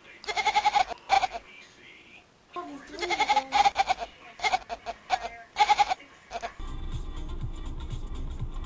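Tabby kitten meowing over and over, a run of loud, high-pitched mews. About six and a half seconds in, a steady low rumble takes over.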